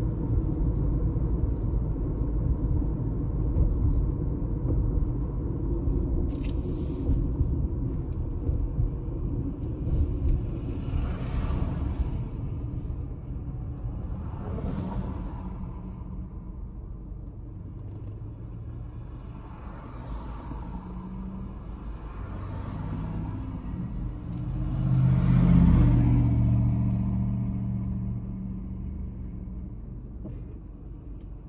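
Road rumble and engine noise heard from inside a car in town traffic, loud at first and dying down as the car slows and stops in a queue. Several other vehicles swell and fade as they go past, the loudest a little before the end.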